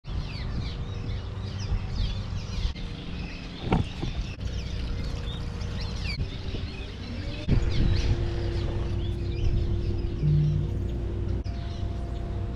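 A flock of birds calling over and over in short, rapid chirps, over background music with held notes. Two brief swooshes come about four and seven and a half seconds in.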